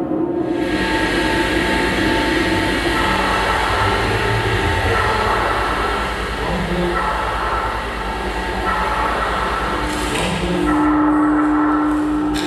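Drone sound art over loudspeakers: several sustained tones layered over a steady low rumble and hiss, the tones shifting every couple of seconds. A strong low tone comes in near the end.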